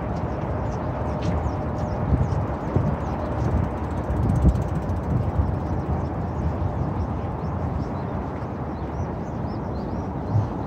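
Outdoor city ambience while walking: a steady rumble of distant traffic and wind on the microphone, with footsteps and a few faint high bird chirps.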